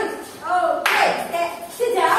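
Voices of a woman and young children in a classroom, with a single sharp clap a little before the middle.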